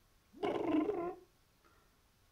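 A man's brief wordless vocal sound, under a second long, rising in pitch at its start, followed by near quiet room tone.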